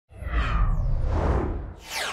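Whoosh sound effect of a channel logo sting over a deep rumble, swelling in at the start and fading out; near the end a second swish sweeps down in pitch.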